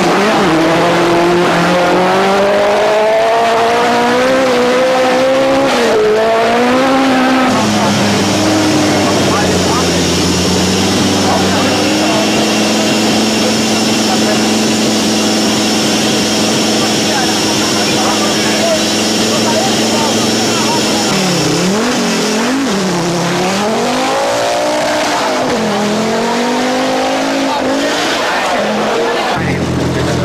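Rally car engine pulling hard, its pitch climbing for several seconds, then running at steady revs, then revs dropping and rising again several times near the end as it lifts off and accelerates.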